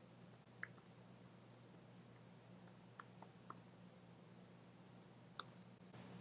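A few faint, sharp computer clicks from a mouse and keyboard, spaced irregularly: one about half a second in, a quick cluster of three around the middle, and one near the end, over a faint low hum.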